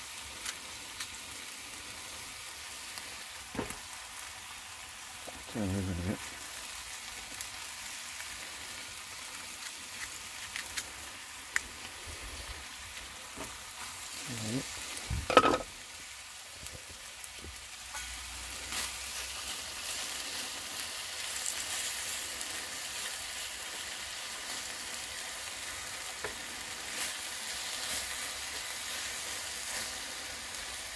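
Pork medallions and halved apples sizzling in oil in a frying pan on a portable gas stove. A few short knocks come around the middle, the loudest about halfway through, and the sizzle grows a little louder in the second half.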